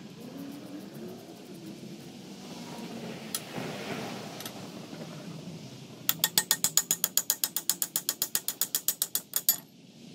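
Hand ratchet wrench clicking fast and evenly, about nine clicks a second, as a bolt on the tow truck's wheel-lift bushing plate is turned. The clicking starts about six seconds in and stops just before the end.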